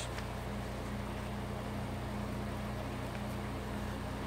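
A steady low machine hum with room noise, with faint rustles of paper journal pages being handled.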